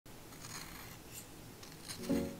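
Utility knife blade shaving wood off a pencil by hand, a few short faint scraping strokes.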